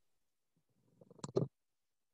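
A brief burst of rough noise picked up through a video-call microphone, rising for about a second and ending in two sharp clicks before it cuts off suddenly.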